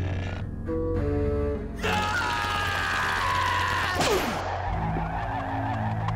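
Cartoon soundtrack: low held music notes, then about two seconds in a loud, noisy burst with a wavering high cry over it. A falling slide about four seconds in ends the burst, and low held notes return.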